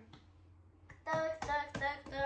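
A girl's voice in a sing-song, chanting tone, starting about a second in, after a quiet start with a couple of faint clicks.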